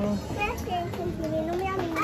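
Small children's voices, high-pitched and chattering, with no clear words.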